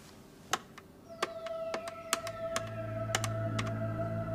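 Desk telephone keypad buttons pressed one after another, about ten clicks, as a number is dialled. Background music with long held tones fades in from about a second in and grows louder.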